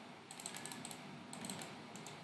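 Faint, scattered clicks of a computer mouse as text is selected and right-clicked.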